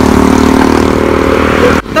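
A vehicle engine idling steadily, cutting off suddenly near the end.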